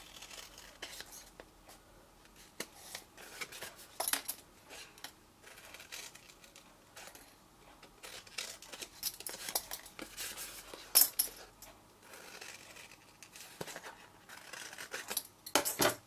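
Scissors snipping through cardstock, cutting small wedges from box flaps: a scattering of short, separate snips with quiet paper handling between them, one sharper click a little past the middle.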